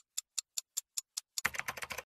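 Computer keyboard typing sound effect: single keystroke clicks about five a second, then a quick burst of keystrokes near the end as a chat message is typed out.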